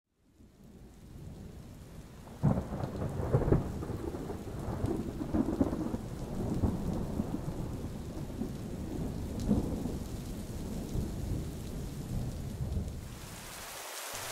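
Thunder with steady rain: a rumble breaks in sharply about two seconds in and rolls on unevenly, while the hiss of rain rises near the end.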